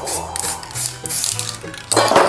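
Aerosol spray-paint can shaken in quick strokes, its mixing ball rattling in a regular rhythm, about three rattles a second.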